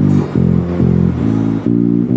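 Gusta GDX1 acoustic guitar and Gusta GJB4 electric bass playing together: a run of plucked notes, each lasting about a third to half a second.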